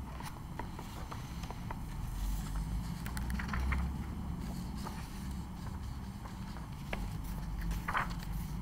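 Quiet room hum with a few faint clicks and rustles of a paperback's pages being handled.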